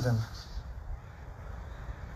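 A man's speaking voice trails off at the end of a word, then a pause with only faint, steady background noise and a low rumble.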